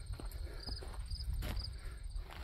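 Insects chirping in short high pulses over a steady high trill, with a few faint footsteps on the ground and a low rumble on the microphone.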